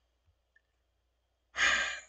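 Near silence, then a person's audible in-breath about a second and a half in, fading out just before speech resumes.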